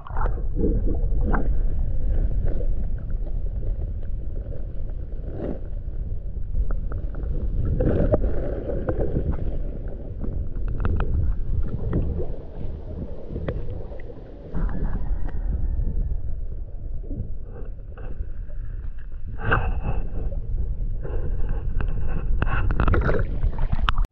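Underwater sound through a submerged camera's microphone: a muffled, steady rumble of moving water with scattered clicks and knocks, and no high frequencies.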